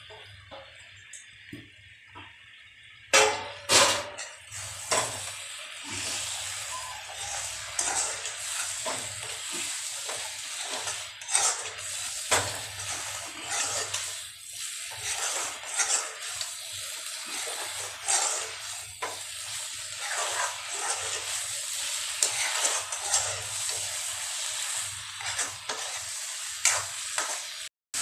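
Pieces of fried elephant foot yam sizzling in oil and tomato masala in a steel pan while a spatula stirs and scrapes through them. A few loud knocks on the pan come about three to four seconds in, as the pieces are tipped in and stirring begins.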